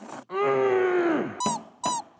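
A man's long, drawn-out moan of delight at the taste of food, dropping in pitch at its end, followed by two short high-pitched squeaky vocal yelps.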